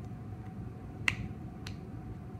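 Two sharp clicks about half a second apart, the first louder, over a steady low hum.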